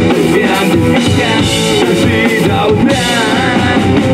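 Rock band playing live: electric guitar, electric bass and drum kit, with a male voice singing over them.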